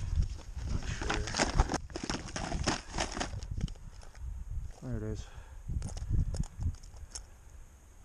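Rummaging through a soft fabric tackle bag: nylon rustling and plastic tackle boxes clicking and knocking together, busiest in the first half, then a few scattered clicks. A short murmured voice about five seconds in.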